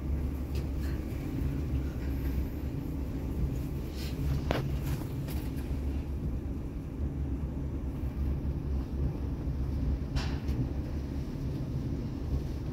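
Toshiba passenger lift car travelling downward at speed: a steady low rumble of the ride through the shaft, with two faint clicks, about four seconds in and near the end.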